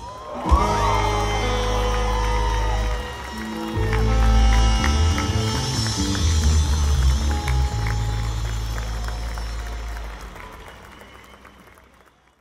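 Live rock band closing a song over a PA: drums stop and held bass and chord notes ring on with a few gliding notes, then fade out over the last few seconds, with some crowd applause under them. Heard from far back in the audience.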